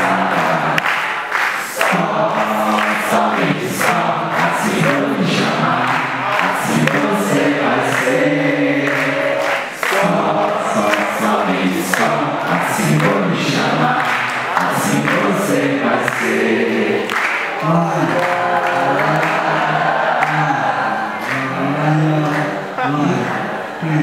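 Many voices singing a song together in chorus: an audience singing along with the performers.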